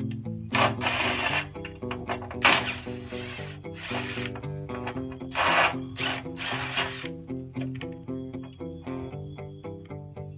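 Guitar background music, with a cordless drill/driver running in about five short bursts over the first seven seconds as it drives bolts into a metal mower deck.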